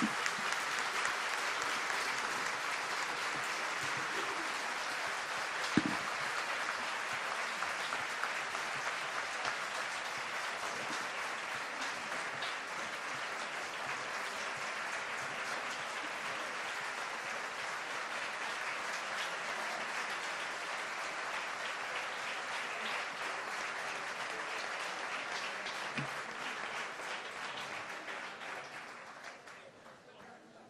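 A large audience applauding steadily, fading away near the end. One sharp knock stands out about six seconds in.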